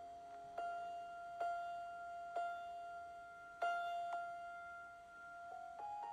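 Quiet piano music: one high note struck again and again at uneven intervals and left to ring, with a few quicker notes coming in near the end.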